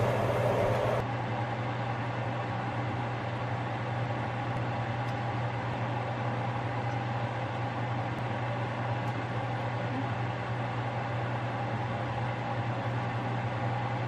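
Steady low hum and hiss of a gas stove burner running under a stainless steel pan of sauce, with a few faint light clicks.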